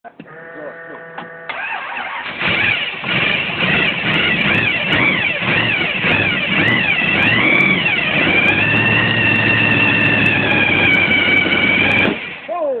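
Hot rod engine starting on the first turn of the key: it catches about two seconds in, is revved up and down several times, then holds a steady fast idle.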